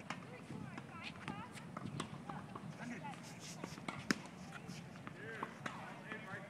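Quiet outdoor tennis-court sound: faint distant voices and a few sharp knocks of tennis balls being struck, the clearest about four seconds in.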